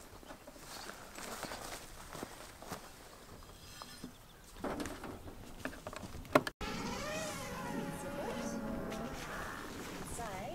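Faint rustling and handling clicks, with one sharp click about six seconds in as a cable is plugged into a Starlink router. Then a flying insect buzzes close by, its pitch wavering.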